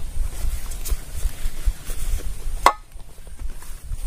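Banana leaf rustling and crinkling as it is folded around a marinated fish, over a low rumble on the microphone, with one sharp crackle about two and a half seconds in.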